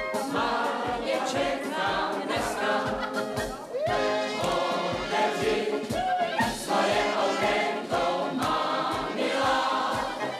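A group of voices singing a song together with instrumental accompaniment, over a steady bass beat.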